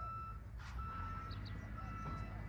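Electronic warning beeps: a single steady high tone sounding about once a second, each beep about half a second long, over a low steady rumble.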